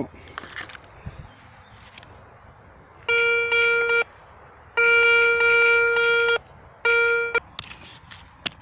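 Garrett ACE 150 metal detector giving its target tone three times as the coil is swept over a dug hole: a steady, even-pitched electronic tone lasting about a second, then about a second and a half, then about half a second. This is the signal that the target is still in the hole.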